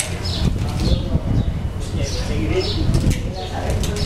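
Indistinct background chatter from several people, with repeated short bird chirps that drop in pitch, each lasting a fraction of a second.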